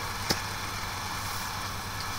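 Room tone in a pause in speech: a steady, faint hiss with a low hum, and one faint click about a third of a second in.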